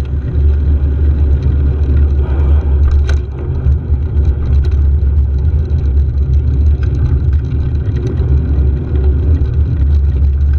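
Steady low rumble of wind buffeting the microphone of a camera on a moving bicycle, with road traffic noise mixed in.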